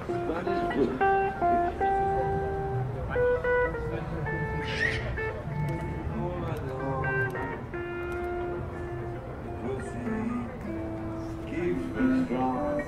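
Guitar music with a melody of held, stepping notes, and people's voices underneath.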